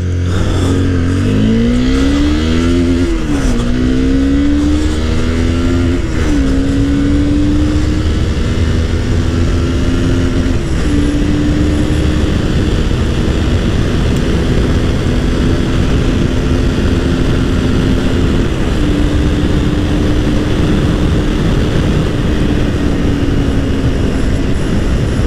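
Honda CBR250R's 250 cc single-cylinder DOHC engine accelerating hard from a standing start, its pitch climbing in each gear. There are four upshifts, each a short dip in pitch, coming further apart as the bike gathers speed. Wind rush builds over the engine as the speed rises.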